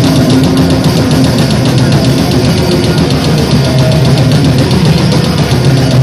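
Hardcore band playing live at full volume: distorted electric guitars and drum kit with a rapid, even beat, blurring into a dense, loud wash.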